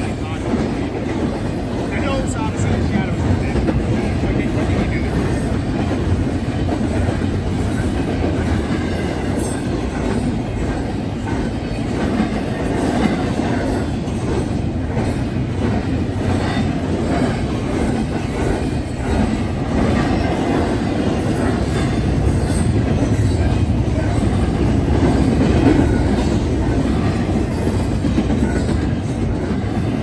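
Double-stack container well cars of a freight train rolling past close by: a steady, loud rumble of steel wheels on the rails with faint repeated clicks, swelling slightly about 25 seconds in.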